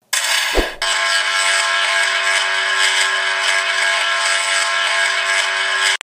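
Electric buzzing sound effect of a shock staff zapping a body, a steady dense buzz that starts suddenly, with a short thump about half a second in, and cuts off abruptly near the end. It is the shock that is meant to revive the unconscious clone.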